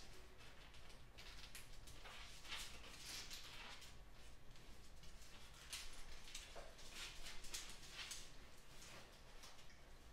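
Faint handling noises of a field-stripped Beretta 92FS pistol's steel parts: short scrapes and light clicks as the slide, barrel and frame are handled and fitted together. They come in clusters, busiest a couple of seconds in and again a few seconds later.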